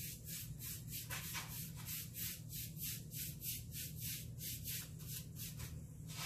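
A paintbrush stroking black chalk paint onto a wooden headboard, a quick, even brushing rasp of several strokes a second, over a steady low hum.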